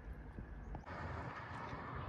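Faint outdoor background with an uneven low rumble, like wind buffeting the microphone. The background changes abruptly about a second in and becomes a fuller hiss.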